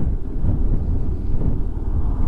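Motorcycle on the move: a steady low rumble of wind buffeting the microphone, mixed with engine and road noise.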